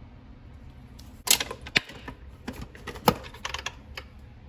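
Sharp plastic clicks and clacks of a Nespresso Vertuo coffee capsule being handled and loaded into the machine, the loudest about a second in and again about three seconds in.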